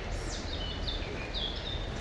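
A songbird singing a short run of high whistled notes, several stepping down in pitch, over a steady low background rumble.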